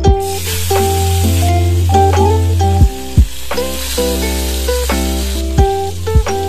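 Hilsa fish steaks frying in hot oil in a pan: a steady sizzle, with plucked-string background music playing over it.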